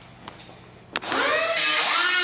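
Handheld power drill: after a quiet first second there is a sharp click, then the motor speeds up with a rising pitch and runs on with a steady whine.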